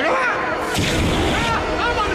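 A sudden deep boom a little under a second in, followed by a low rumble that carries on, over a person's raised voice.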